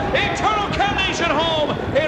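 A man's voice speaking animatedly, the pitch swinging widely up and down, over steady background noise: the race announcer carrying on from his finish call.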